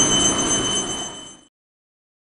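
A steady, high-pitched whine of several held tones over a noise bed. It fades out about a second in and ends in silence about a second and a half in.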